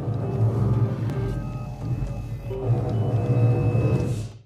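Dramatic film score music playing over a low, pulsing spaceship engine rumble.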